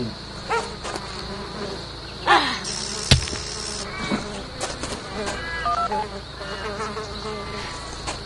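Insects buzzing in a steady high drone, with a sharp thump about three seconds in and a short run of electronic beeps near six seconds.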